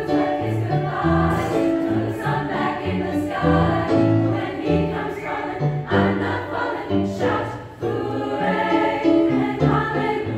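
Treble choir of girls singing a song in parts, with electronic keyboard accompaniment holding low notes underneath.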